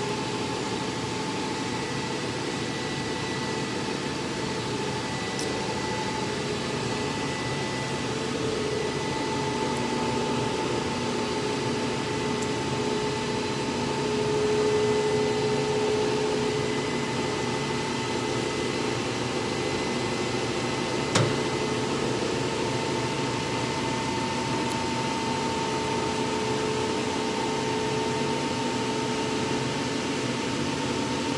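Chassis dynamometer rollers spun by the dyno's motor at about 31 mph during a coast-down calibration: a steady mechanical whir with a hum of a few steady tones, swelling slightly midway, and a single sharp click about 21 seconds in.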